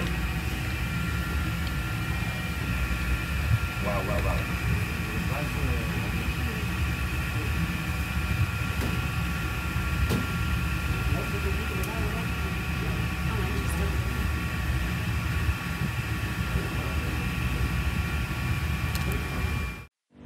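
A steady low hum with several thin, steady high whining tones above it, and faint voices in the background.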